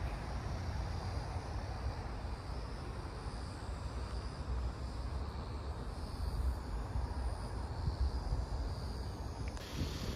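Outdoor ambience: uneven low wind rumble on the microphone over a steady faint hiss.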